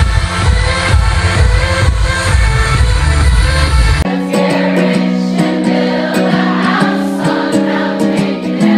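Live electronic dance music with a heavy bass, played loud through a concert sound system. About halfway through it cuts suddenly to a different live performance, with singing over sustained notes and almost no bass.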